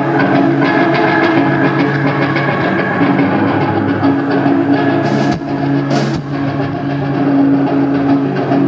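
Live rock band playing loud: distorted electric guitar through Marshall amplifiers holding sustained notes over a drum kit, with two cymbal crashes about five and six seconds in.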